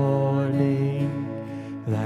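Live worship band music: a single long held sung note over acoustic and electric guitars, breaking off shortly before the end.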